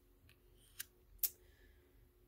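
A laminated tarot card lifted off the deck and laid on a spread of cards: a few faint, short clicks, the sharpest a little past the middle.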